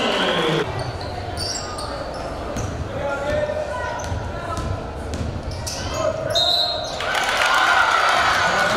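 A basketball being dribbled on a gym floor during a game, with voices in the hall. The sound changes abruptly about half a second in and again near the end.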